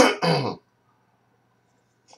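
A man clearing his throat once: a loud rasp ending in a short grunt that falls in pitch, all within the first half-second.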